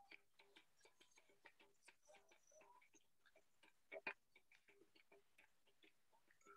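Near silence, with faint irregular clicks several times a second and a slightly louder double click about four seconds in.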